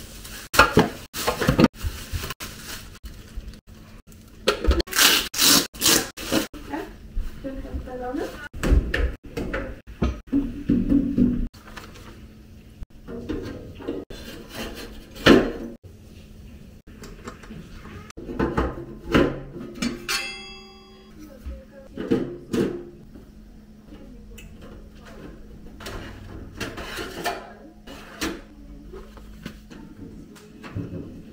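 Unpacking and assembling a pizza oven by hand: plastic packaging rustling and cardboard handled, with many scattered knocks and clatters of metal parts set down on a table. A brief high squeak comes about twenty seconds in.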